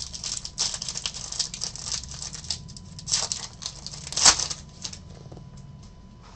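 A silver foil trading-card pack wrapper crinkling and tearing as it is opened by hand, in a run of crackles with the sharpest a little over four seconds in; it dies away about a second before the end.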